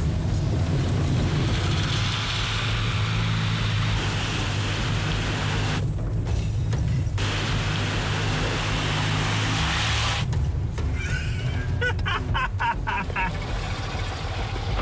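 Background music over a Fiat 126p's small two-cylinder air-cooled engine and the rush of muddy water spraying up as the car charges through a flooded dirt road.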